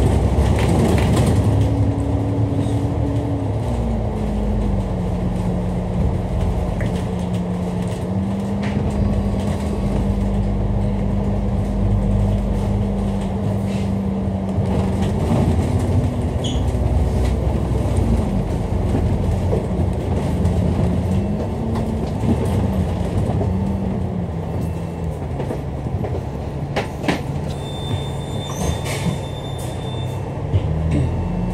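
Dennis Enviro500 MMC double-decker bus's engine and driveline running on the move, heard from inside the upper deck: a low rumble with a steady whine that steps up and down in pitch several times as the bus changes speed.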